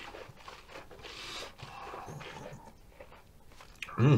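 Faint mouth and breathing sounds of a person tasting whisky: soft breaths with a few small wet clicks of the lips and tongue.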